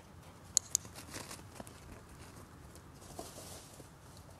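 A dog-training clicker giving two sharp clicks about a fifth of a second apart, about half a second in, marking the dog's successful run through the agility weave poles.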